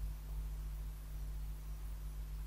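Steady low hum with a faint even hiss: the recording's background noise, with no other sound.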